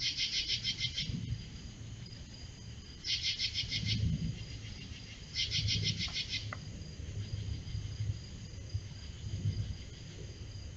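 Night-singing insects calling: three bursts of rapid pulsed chirping, each about a second long and a couple of seconds apart, over a steady thin high trill.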